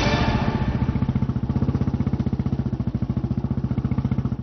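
Motorcycle engine idling with an even, rapid pulse, as background music fades out in the first second.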